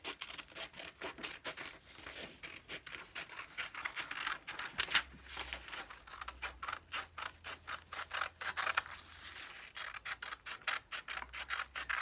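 A pair of scissors cutting through a sheet of paper in a long run of quick snips.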